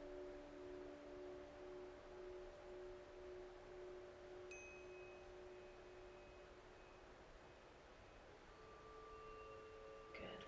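Very faint ambient background music: a few sustained chime-like tones that slowly fade, with a high ping about four and a half seconds in and new notes coming in near the end.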